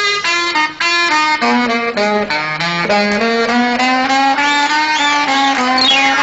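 Saxophone playing an unaccompanied solo phrase: a single melodic line climbing in stepped notes, with vibrato on the high held notes near the end and a downward smear to finish.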